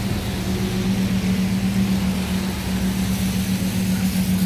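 Lamborghini Huracán's V10 idling with a steady low hum, over an even hiss of traffic on wet pavement.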